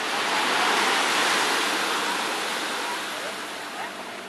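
A small sea wave washing up onto a sandy beach: a rushing hiss that swells about a second in and then slowly dies away.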